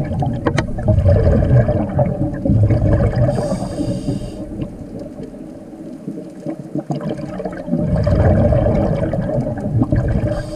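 Scuba diver breathing through a regulator underwater: a long bubbling rumble of exhaled air, a short hiss of inhaling about three and a half seconds in, a quieter spell, then another bubbling exhale from about eight seconds in.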